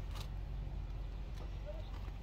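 Faint steady low background rumble, with a brief faint rising chirp about one and a half seconds in.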